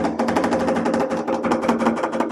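Background music: a fast, even run of clicking percussion, about ten strikes a second, over steady held notes.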